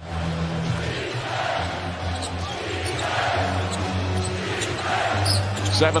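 Arena crowd noise that swells and falls, with a basketball being dribbled on the hardwood court.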